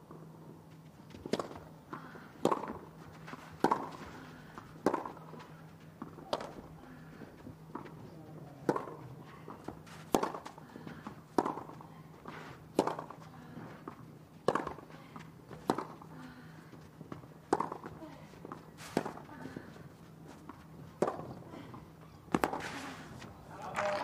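Tennis ball struck back and forth by racquets in a long clay-court rally, a sharp hit about every second and a half. The crowd starts to react near the end as the point finishes.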